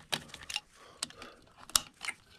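A few small, sharp clicks and scrapes as an insulated screwdriver undoes the faceplate screws of a plastic three-gang appliance isolator switch, with the faceplate being handled to come off.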